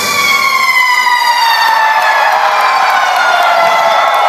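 A sustained synthesizer note with several overtones gliding slowly and steadily downward in pitch as the song ends, with crowd cheering beneath it.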